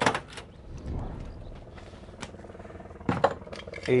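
Someone climbing into the cab of a 1971 Ford Bronco: a light click a couple of seconds in, then a short cluster of knocks and rustles about three seconds in as he takes hold and settles onto the bench seat, over a steady low rumble.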